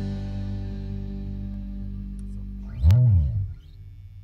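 Electric guitars and bass letting the final chord of a rock song ring and fade. About three seconds in, a loud low note slides up and back down with a click, ending the song.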